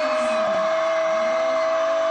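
A sports commentator's goal shout, one long vowel held on a single steady pitch, over crowd noise.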